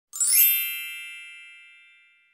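A bright chime sound effect: a quick upward shimmer of many high ringing tones that then rings out and fades away over about two seconds.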